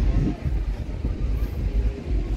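Wind buffeting the phone's microphone, a loud, uneven low rumble that rises and falls in gusts.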